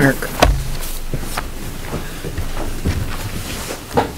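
A few scattered clicks and soft knocks from papers and pens being handled on a meeting table, picked up by a table microphone.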